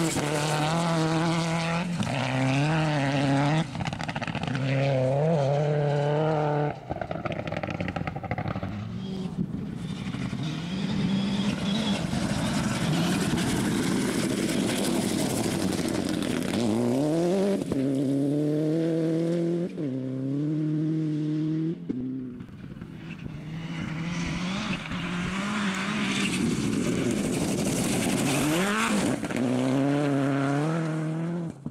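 Mitsubishi Lancer Evolution rally car's turbocharged four-cylinder engine at full throttle, rising in pitch and breaking at each gear change, in several separate passes. Between the passes the engine sinks into a steady rushing noise.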